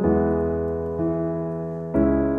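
Slow piano accompaniment with no singing: chords struck about a second apart, each left to ring and fade.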